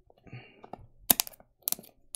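Several sharp clicks and taps from small hard objects being handled, bunched in the second half, after a brief soft rustle.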